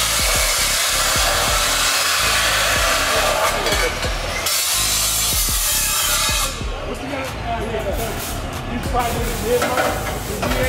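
DeWalt abrasive chop saw cutting through metal exhaust pipe: a loud, harsh grinding hiss of the disc in the steel. It lasts about six and a half seconds, with a brief dip partway, then stops as the cut finishes.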